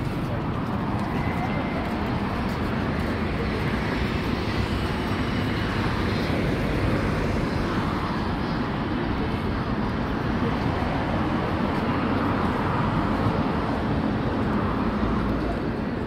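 Busy city street: a steady wash of traffic noise with passers-by talking.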